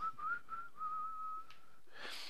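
A person whistling softly: a few short wavering notes, then one longer held note that stops shortly before the end.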